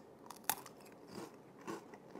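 A man biting into a dry, brittle olive oil and oregano cracker: one sharp snap about half a second in, then faint crunching as he chews.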